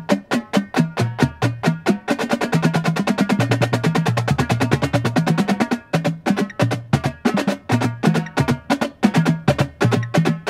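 Marching drumline of snare drums, tenor drums and tuned bass drums playing a warm-up exercise together. Evenly spaced strokes give way about two seconds in to a dense passage of fast strokes and rolls lasting nearly four seconds, then separate strokes return. Underneath, the bass drums' pitches step up and down.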